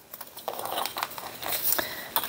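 Snap-off utility knife slicing through a stack of book pages along a steel ruler: a dry, scratchy cutting sound made of many small irregular ticks.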